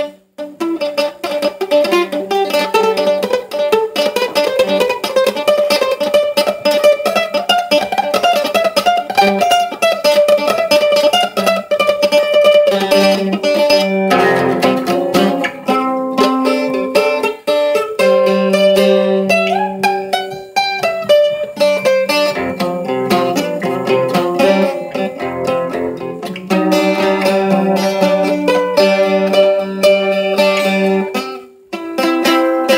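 Bowl-back mandolin played with a pick: a fast picked melody with sustained, rapidly repeated notes. There is a brief break right at the start.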